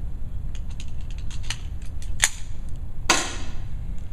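A few faint clicks, then about three seconds in a single sharp air pistol shot that rings briefly off the walls of the indoor range.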